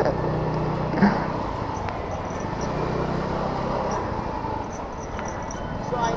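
A Yuki Retro 100 scooter's small engine running while it rides slowly through traffic, a steady low hum under road and wind noise. The hum eases off after about four seconds.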